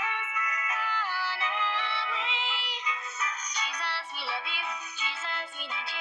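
A Christian worship song: a high voice singing a gliding melody over music, with a thin sound and no bass.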